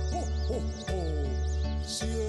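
A Christmas carol played on a Yamaha electronic keyboard, with a steady bass note underneath, a high warbling figure repeating over the top, and a man's voice singing along.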